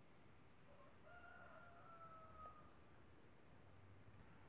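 A single faint rooster crow, starting about a second in and lasting under two seconds, over near silence.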